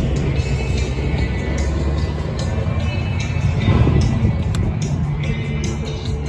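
Music playing over a heavy, uneven low rumble of wind on the microphone.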